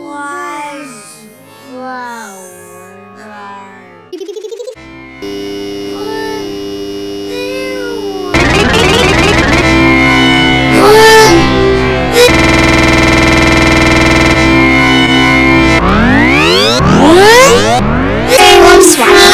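Electronically distorted cartoon audio. Warbling, pitch-bent sounds in the first few seconds and a brief buzz give way to steady synthesizer-like tones. These jump much louder about eight seconds in and turn into rising sweeps near the end.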